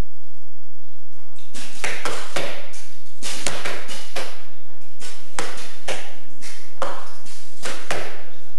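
Many archers shooting bows at once: a fast, irregular run of about twenty sharp cracks from bowstring releases and arrows striking the targets, starting about a second and a half in.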